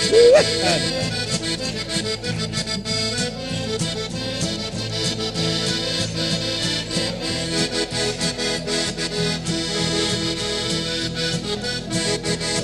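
Instrumental break of a folk song played on accordion and two acoustic guitars: the accordion carries the melody over steady rhythmic guitar strumming. Near the start a short, loud sliding cry rises above the music.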